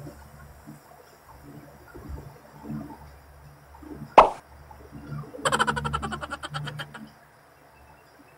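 A single sharp pop about halfway through as a small plastic jar of face cream is opened, followed a second later by a fast series of clicks, about a dozen a second, lasting a second and a half.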